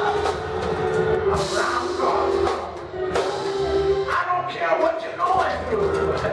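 Live gospel music through a church PA: a drum kit keeps the beat under long held notes while a man sings into a microphone.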